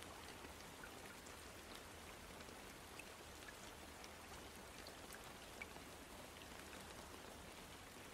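Faint, steady rain falling, an even patter with a few single drops standing out.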